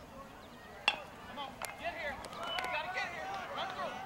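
A baseball bat hits a pitched ball with one sharp crack about a second in. Spectators then break into overlapping shouting and cheering.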